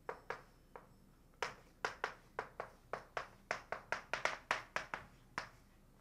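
Chalk tapping and clicking against a blackboard as a line of formula is written. A few separate taps come first, then a quick run of about five a second, which stops shortly before the end.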